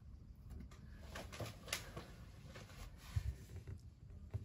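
Faint handling sounds of hands moving over and pressing down tarot cards on a wooden table: several light ticks and rustles, with a soft low bump about three seconds in.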